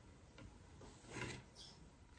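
Near silence: room tone, with a faint brief rustle a little past a second in.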